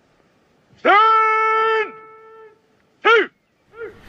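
A man's drawn-out parade-ground shout of a military command, held on one pitch for about a second, with a second voice joining faintly near its end; a short shout follows about two seconds later, and a fainter one just before the end. These are soldiers relaying the order to stand to.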